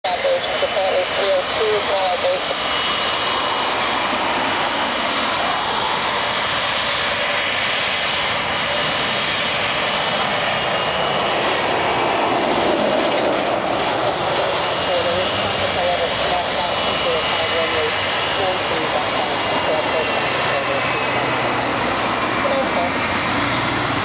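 Boeing 757's two Rolls-Royce RB211-535E4B turbofan engines running at taxi power as the airliner rolls along the taxiway: a steady jet whine with thin high tones over a rushing hiss.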